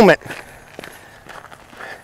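Quiet footsteps of a person walking, a few soft, scattered steps.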